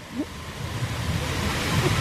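Water sheeting down a stacked-stone fountain wall, a steady rush that grows louder through the two seconds, with a low rumble of wind on the microphone beneath it.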